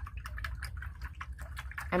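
Paintbrush being swished and rinsed in a jar of water, a run of small irregular clicks and splashes.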